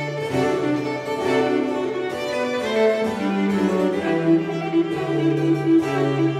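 A baroque string ensemble playing a lively concerto movement for viola and strings. A sustained bowed bass line sits under moving upper string parts, with quick repeated notes in the second half.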